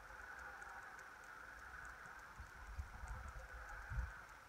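Faint handling noise from fingers working fly-tying materials at the vise: soft low bumps and light ticks, busier in the second half, over a steady background hiss.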